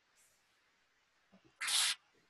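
A short, noisy sucking slurp as a drink is drawn through a straw from a cup, lasting under half a second near the end.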